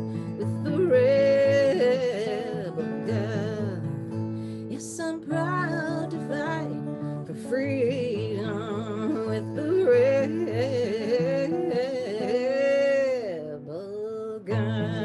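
A woman singing a Finnish-language song, accompanying herself on acoustic guitar, with vibrato on long held notes and one long held note near the end.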